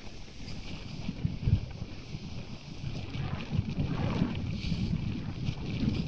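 Wind buffeting the microphone on a ship's open deck at sea: an uneven low rumble that swells and dips in gusts.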